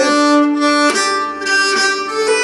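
Nyckelharpa being bowed, playing a few sustained notes of a jig phrase, the note changing about a second in and again near the end.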